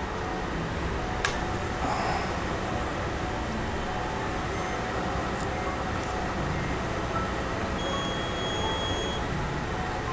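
Steady background hum of room and air noise, with a single sharp click about a second in as the Hotronix cap heat press is clamped shut over the hat for its timed press.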